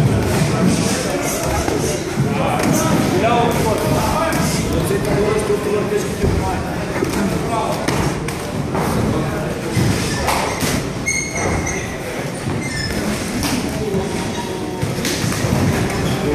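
Irregular thuds of boxing gloves, pads and kicks landing during muay thai sparring, over a continuous background of voices.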